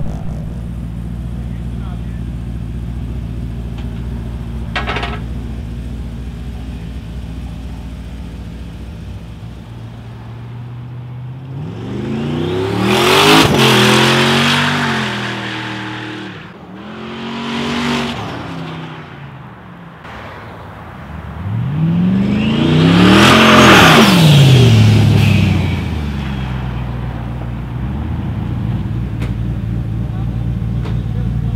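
Twin-turbo 408 ci LS V8 of a Chevy pickup running at a steady idle, then revved hard in three loud surges during a street burnout, its pitch climbing and dropping with each, the last surge the loudest.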